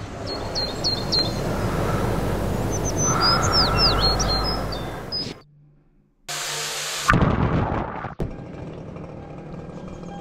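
Outdoor ambience of a steady rush of wind with songbirds chirping: a few short high calls in the first second, then a cluster of quick falling calls between about three and five seconds. After a sudden cut to near silence comes a short burst of hiss from a shower being turned on, followed by knocks and a quieter rushing noise.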